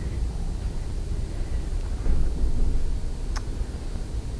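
Low, steady rumbling room noise, with one short sharp click about three and a half seconds in.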